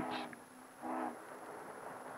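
Pause in a man's narration: the end of a spoken word, then the faint hiss of an old 16mm film soundtrack with a thin steady high whine. A short, faint voice-like sound comes about a second in.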